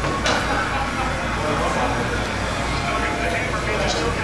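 Indistinct background chatter and room noise of a busy pool hall over a steady low hum, with two sharp clicks, one about a third of a second in and one near the end.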